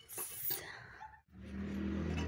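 Rustling handling noise, then a steady low motor hum with a buzzy edge sets in about halfway through and holds to the end.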